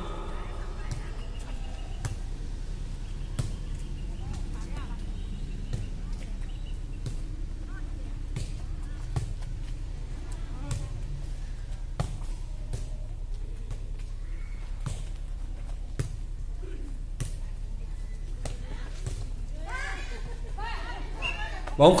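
Players' hands striking a light, soft air-volleyball in a long rally: sharp single slaps every second or few, over a low steady hum and faint chatter. A man's voice comes in near the end.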